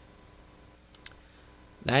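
Two quick clicks of a computer mouse about a second in, close together, scrolling the on-screen Bible text down a verse.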